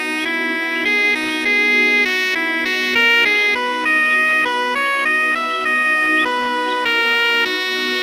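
Slow instrumental relaxation music: a saxophone plays a melody, moving from note to note over a steady held low drone.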